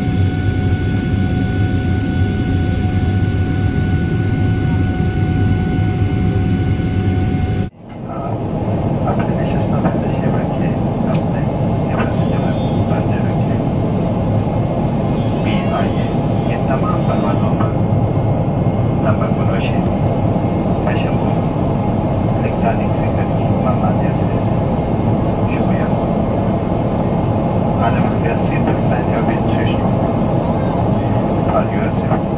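Cabin noise beside the wing of a Boeing 777-300ER climbing after takeoff: the GE90 engines' steady roar with several steady whining tones over it. About eight seconds in, the sound cuts abruptly to a broader steady roar with faint voices over it.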